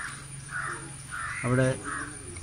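A crow cawing repeatedly: about four short caws, roughly half a second apart.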